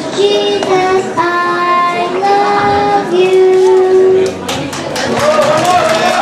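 A young girl singing into a hand-held microphone, holding long notes over a backing track. The song ends about four seconds in and clapping starts.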